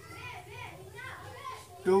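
Faint voices of children in the background, well below the level of the teacher's speech.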